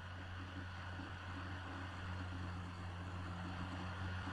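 Steady low hum with an even faint hiss: the background noise of the recording's microphone chain.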